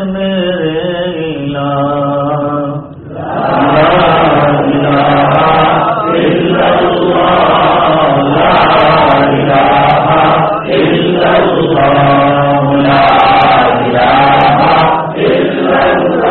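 Islamic loud dhikr (zikr-e-jali): a single man's voice chants a line melodically, then about three seconds in a congregation of men joins in, chanting together loudly in repeated phrases.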